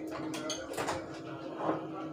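Light handling sounds of a mug on a kitchen counter, a few faint knocks, over a steady low hum.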